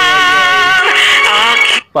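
Female singer holding a long, wavering note with vibrato over a ballad's accompaniment, the music cutting off suddenly near the end as the video is paused.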